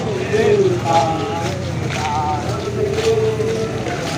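A column of marching soldiers singing a marching chant together, with long held notes.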